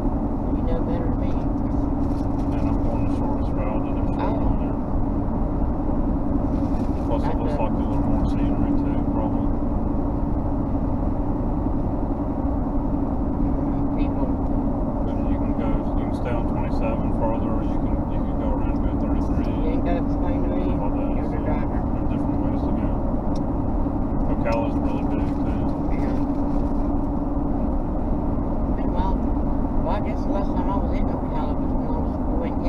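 Steady road and engine noise inside a car cabin cruising at highway speed: a constant low drone with a steady hum running through it.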